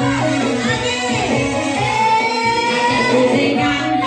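A Dayak song: a woman's voice singing over instrumental backing with a steady bass line, holding one long note through the middle.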